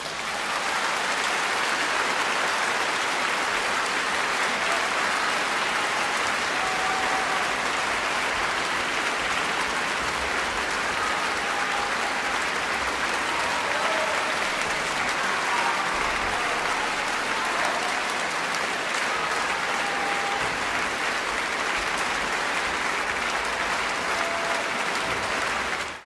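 Concert-hall audience applauding steadily at the end of a performance.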